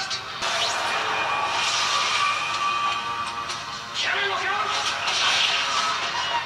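TV episode soundtrack: dramatic music under dialogue, with a noisy rush of sound effects filling most of it and a short line of speech about four seconds in.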